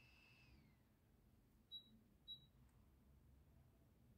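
A faint high-pitched electronic whine from an HP Pavilion 15 laptop slides down in pitch and dies out within the first second as the machine goes dark to restart after a BIOS update. Then come two short high beeps about half a second apart, over near silence.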